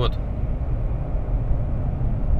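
Steady low road and engine rumble heard inside the cabin of a moving 2021 Mercedes-Benz 220d 4Matic diesel car.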